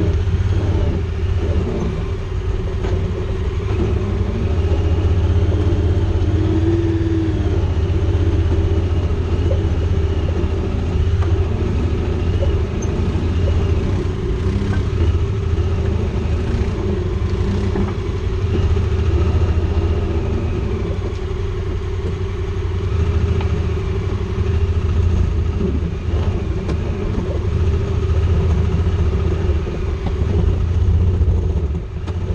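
Honda Pioneer 1000-5 side-by-side running at low speed over a rocky trail. Its engine gives a steady deep rumble that rises and falls a little with the throttle, with light knocks and rattles from the body over the rocks.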